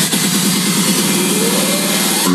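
Electronic dance music from a DJ set during a build-up: fast repeated notes with the deep bass cut out, and a rising sweep through the second half.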